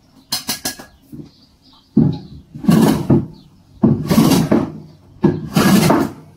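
Metal bench plane pushed along a rough wooden block in three forward strokes, each about a second long, shaving the wood, with a few quick clicks as it is set down just after the start. The wood is uneven, so the blade is taking shavings off the raised spots.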